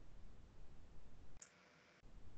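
Faint low hum and hiss of room noise over a call microphone, with one short click about one and a half seconds in, after which the sound cuts out almost completely.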